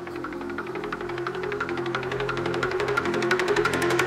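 Dark techno music building up: a held synth line over a roll of quick percussive ticks that speeds up as the music grows steadily louder.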